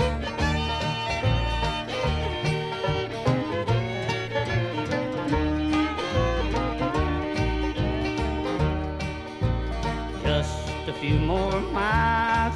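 A bluegrass band plays an instrumental break between verses of a truck-driving song, with no singing, over a steady beat. Sliding notes rise near the end.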